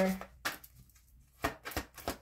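Oracle cards being handled and shuffled between two hands: one sharp tap, then a quick run of card clicks and taps about a second and a half in.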